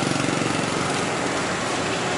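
A small engine running steadily with a fast, even pulse over street noise, slowly easing off.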